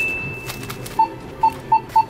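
Self-checkout barcode scanner beeping as items are scanned: about four short beeps of one pitch in the second half, unevenly spaced, after a thin high electronic tone fades out in the first half.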